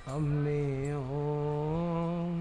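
A man's voice in Gurbani keertan holding one long sung note over harmonium. The pitch dips slightly about a second in and steps up a little near the end.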